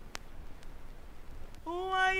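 Faint record-surface hiss with a sharp click just after the start, then a voice enters about one and a half seconds in on a long, held sung note that opens the song's vocal line.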